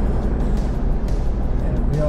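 Steady road and engine noise inside the cab of a moving 4x4 on a tar road: a deep, even rumble with tyre hiss over it.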